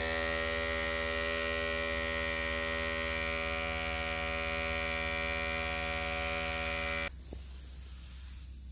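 Small electric pump motor of a carpet pre-treatment sprayer running with a steady buzzing hum, starting suddenly and cutting off about seven seconds in.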